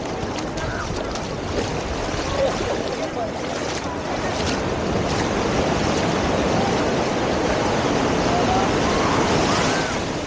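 Small waves breaking and washing up over sand at the shoreline, a steady rush of surf with foam swirling in the shallows.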